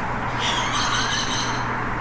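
Steady outdoor background noise: a broad hiss over a low, even hum, of the kind distant traffic or a running machine gives. About half a second in, a high, several-toned squeal rises over it and lasts about a second.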